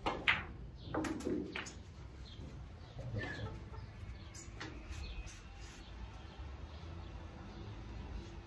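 Snooker balls clicking during a shot: the cue strikes the cue ball, which hits a red with the loudest sharp click just after the start, followed by a few softer knocks of balls against the cushions and into a pocket over the next few seconds.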